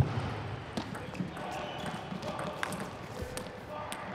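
Plastic table tennis ball being hit back and forth in a doubles rally: a handful of sharp, irregular clicks as it strikes rubber paddles and the table, with voices in the hall behind.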